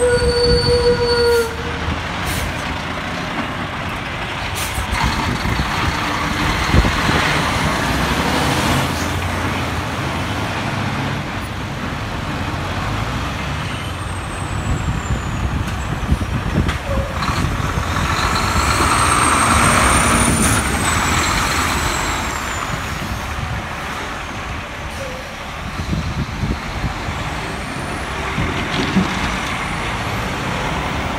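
Diesel engines of tri-axle dump trucks, a red Kenworth and then a teal Peterbilt, running as the trucks drive past and turn. A short horn toot sounds in the first second and a half.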